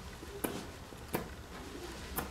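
Paintbrush dabbing and stroking on a stretched canvas: two faint short taps, about half a second and a little over a second in, over a low steady room hum.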